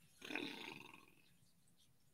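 A brief, faint throaty vocal sound from a person, lasting about half a second, then near silence.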